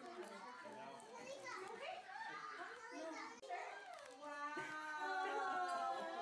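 Young children's voices chattering and calling out over one another, with a longer drawn-out call about five seconds in.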